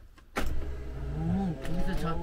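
Electric drive of a motorhome's drop-down bed running as the bed lowers: a steady motor hum that starts suddenly about a third of a second in and rises slightly in pitch.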